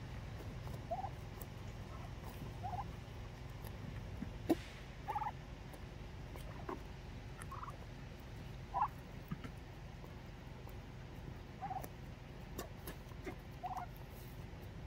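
White domestic turkeys giving short calls at irregular intervals, about eight in all, with one sharp click a little after four seconds in.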